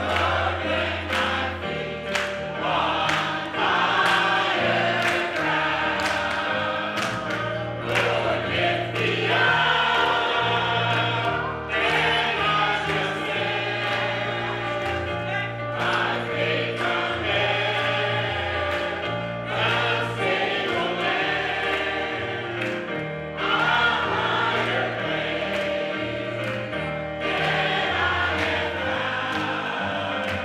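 Gospel choir singing with instrumental accompaniment, with a steady beat of hand claps.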